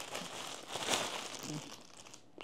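Clear plastic bags crinkling as they are handled and shuffled by hand, loudest about a second in.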